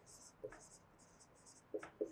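Dry-erase marker writing on a whiteboard: a quick series of short, faint, scratchy strokes.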